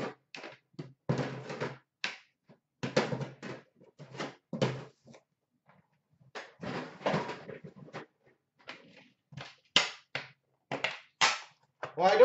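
Hockey-card boxes, tins and packaging being handled: a string of irregular thunks, taps and rustles.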